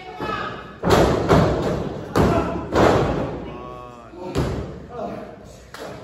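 Heavy thuds on a wrestling ring, five loud blows at uneven spacing over about four seconds, with a voice calling out once between them.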